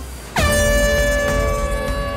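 Handheld canned air horn blown as the starting signal, a single long, loud, steady blast that begins about a third of a second in and is held.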